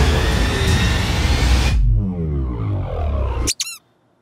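Edited soundtrack effect: loud, dense music-like noise that slows and slides down in pitch, like a tape stopping, then cuts off abruptly with a brief squeaky chirp.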